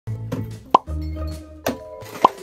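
Intro music with cartoon plop sound effects: a sharp, ringing plop a little before the middle and a second one near the end, over steady musical tones and bass.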